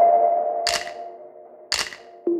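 Background music: a held chord with a sharp, clap-like beat about once a second. The chord fades out over the second half.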